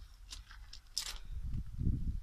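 A few short rustling crunches, then a low rumbling handling noise that grows in the second half as the handheld camera is moved along the plants.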